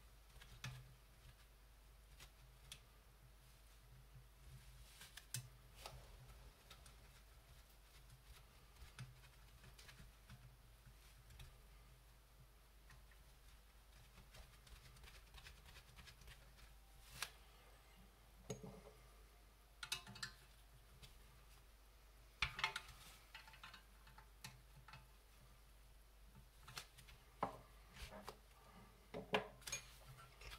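Faint scattered clicks and light metallic taps of a small screwdriver and tiny bolts on a metal model chassis frame, with a few louder clinks in the second half as the parts are handled.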